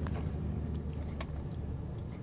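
Vehicle engine running, heard from inside the cabin as a low steady rumble, with a few faint light clicks.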